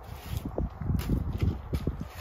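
Footsteps on the ground of a building site, a few short steps about half a second apart, with wind rumbling on the microphone.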